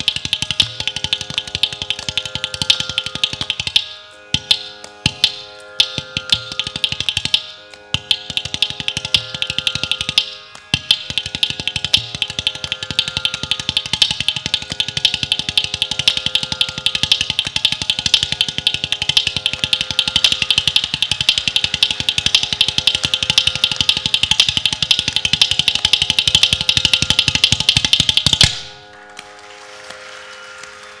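Ghatam (clay pot drum) played in fast, dense rhythmic strokes over a steady tanpura drone, as a percussion passage in a Carnatic concert. The playing stops suddenly about a second and a half before the end.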